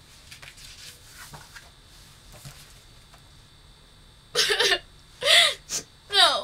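A woman sobbing: after a few quiet seconds, gasping sobs break out, followed by a short wailing cry and a quick catch of breath near the end.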